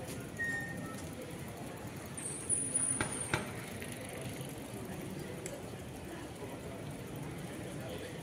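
Outdoor city street ambience around a silent crowd: a steady low hum of distant noise with faint murmured voices. A brief high squeak and two sharp clicks come about three seconds in.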